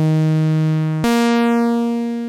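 Two sustained synthesizer notes, the second a step higher and starting about a second in, played through a Trogotronic m/277 tube VCA whose left and right channels are set to different drive and amplitude. The tone shifts and moves in stereo as each note's envelope changes the level going into the tube VCA.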